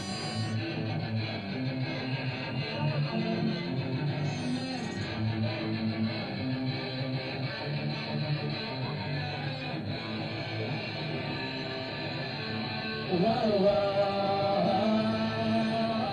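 Punk rock band playing live: electric guitar, bass and drums. A voice comes in singing about thirteen seconds in, and the music gets louder there.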